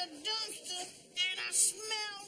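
A song: a high-pitched singing voice over musical backing, in short broken phrases.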